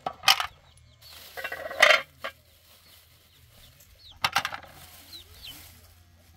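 Metal cooking pot clattering and clinking as it is handled with eggplants in it: a sharp ringing clank just after the start, another about two seconds in, and a double clank about four seconds in.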